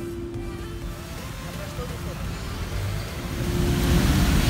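Background music with a held note fading out, giving way to outdoor street noise with a low rumble that grows louder near the end.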